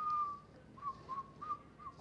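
A person whistling: one held note of about half a second, then four short, slightly lower notes.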